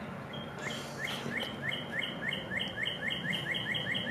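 A songbird singing a fast, even series of repeated notes, each a quick upward slur followed by a short higher note, about four a second, starting just after the beginning, over a steady low background hum.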